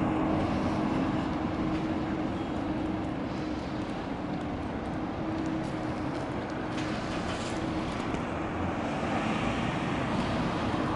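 Steady outdoor traffic noise with a constant low hum running under it.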